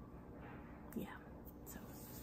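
Only speech: a woman says a couple of soft words about a second in, over low room tone.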